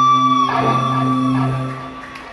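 Electric guitar and keyboard holding a sustained chord, with a fresh strum about half a second in that rings and fades away near the end: the close of a live pop-rock song.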